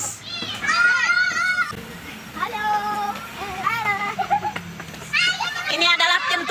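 Children's high-pitched voices shouting and calling out in several separate bursts while they play.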